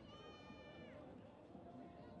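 A faint, high-pitched call lasting under a second, held steady and then dropping in pitch at the end, over a low murmur of voices.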